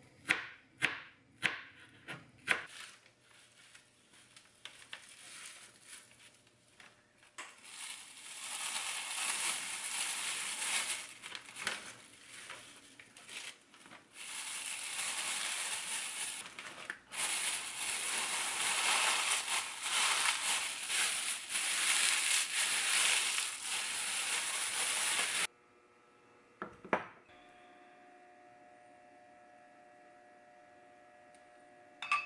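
A kitchen knife chopping green chili peppers on a plastic cutting board, a few quick chops in the first couple of seconds. Then sheets of dried laver (gim) are crushed and crumbled by hand inside a plastic bag: a long, dense crackling and rustling that cuts off suddenly near the end, followed by a single knock.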